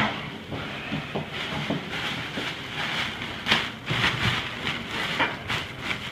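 Irregular rustling and crinkling of gauze and paper drapes handled by gloved hands pressing and wiping at a draining abscess incision, with a few sharper crackles about midway and near the end.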